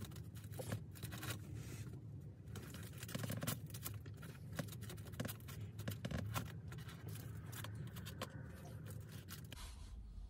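Plastic knife and fork scraping and cutting through a glazed doughnut against the bottom of its box: a continuous run of faint scrapes and small clicks.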